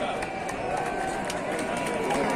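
Crowd chattering while the opening firecrackers of a mascletà go off in the distance as a few scattered sharp cracks.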